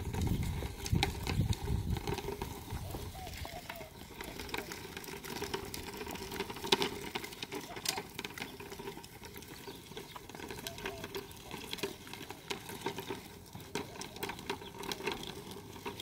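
A horse walking in harness on sandy ground while pulling a set of PVC false shafts, heard as scattered small clicks, scuffs and rustles from hooves, harness fittings and the dragged poles and rope traces.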